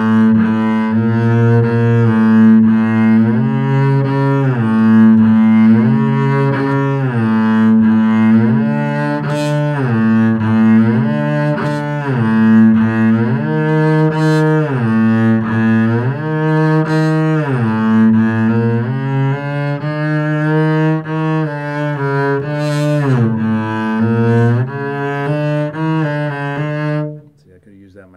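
Double bass bowed through shifting exercises: the player slides up the string from a low note to a higher one and back down to the same note, over and over, with the glides heard between notes. The playing stops about a second before the end.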